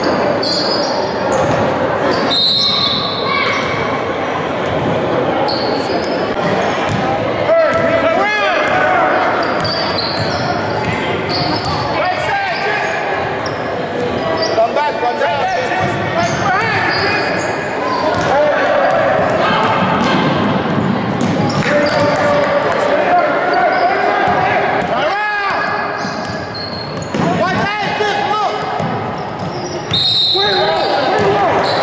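Basketball game sounds in an echoing gym: a ball bouncing on the hardwood court, short sneaker squeaks, and the voices of players and spectators calling out throughout.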